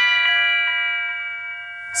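Electric guitar chord played through a Strymon Mobius on its Quadrature patch. The notes are struck just before and rings on, fading slowly with a long decay. The depth of the effect follows how hard the strings are hit.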